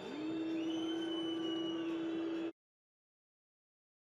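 A single held note over a faint noisy background, cut off abruptly about two and a half seconds in.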